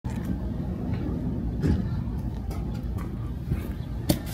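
Steady low outdoor rumble, like distant traffic, with a few light knocks, the loudest a little before halfway in.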